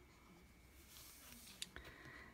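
Near silence with faint rustling of a cardstock album flap being turned by hand, and a couple of light paper taps near the end.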